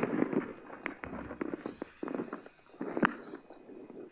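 Scattered sharp clicks and taps, with a louder click about three seconds in and a faint high hiss just before it.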